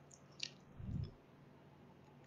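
Quiet room tone with a faint short click about half a second in, then a soft low thump about a second in.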